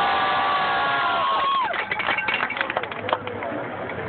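Spectators in a crowd cheering: a long, high, held whoop lasting about two seconds, then a burst of scattered clapping.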